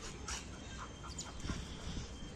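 A small dog sniffing and panting faintly as it noses at gravel, a few soft short sounds over a low steady background.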